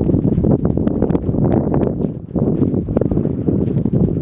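Wind blowing hard across the camera microphone: a loud, buffeting noise with a short lull about two seconds in.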